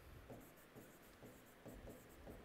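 Faint strokes of a felt-tip marker writing on a whiteboard, in short scattered squeaks and rubs.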